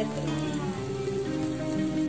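Beetroot cutlets sizzling as they shallow-fry in oil in a nonstick pan, a fine crackling hiss, under steady background music.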